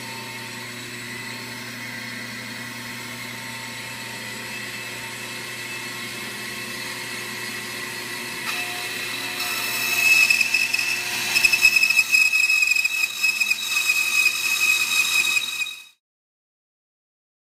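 Bandsaw running with a steady motor hum, then cutting through a thick wooden board, growing louder and rougher with a high whine from about nine seconds in. The sound cuts off suddenly near the end.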